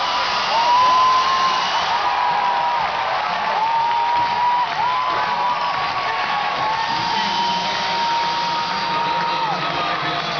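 Stadium crowd cheering and whooping, with a high steady tone sounding over it again and again, each one held for one to three seconds.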